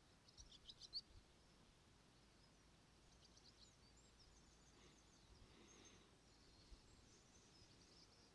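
Near silence, with faint high bird chirps: a quick run of chirps in the first second, then scattered faint twittering through the rest.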